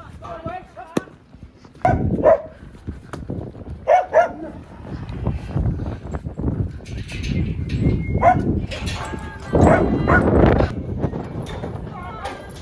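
A dog barking a few short times, mixed with people's calls to the cattle, over bursts of loud low rumbling noise.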